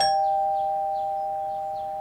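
Two-note ding-dong doorbell chime, a higher note struck just before a lower one, ringing on and slowly fading away.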